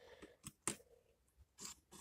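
Faint, scattered scraping and clicking of a 1:64 Maisto die-cast Volkswagen 1600 Squareback being pushed by hand along a surface while towing a toy camper trailer, the trailer scraping as it rolls.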